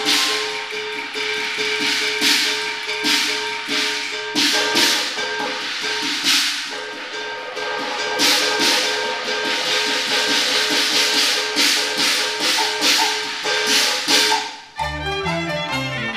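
Cantonese opera accompaniment playing an instrumental passage: a busy run of loud percussion strikes over sustained held notes. Near the end the percussion stops and the melodic instruments carry on with a moving tune and bass line.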